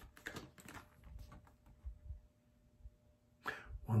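Tarot cards being handled in the hands: a few soft, scattered rustles and light taps, then a spoken word near the end.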